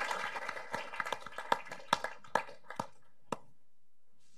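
Applause welcoming a speaker, thinning into a few scattered claps and stopping a little over three seconds in.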